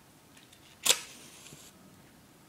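A match struck on the side of a matchbox once, about a second in: a sharp scrape followed by the brief hiss of the match head flaring.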